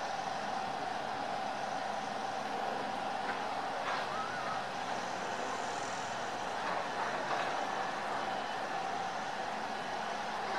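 Steady outdoor background noise with a constant low hum, like distant traffic.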